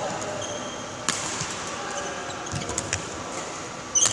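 Badminton play: a few sharp racket hits on the shuttlecock and short squeaks of court shoes on the mat, the loudest hit and squeak coming right at the end.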